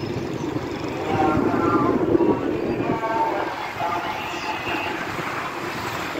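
Steady outdoor city noise, a rumble of traffic, with a voice heard now and then.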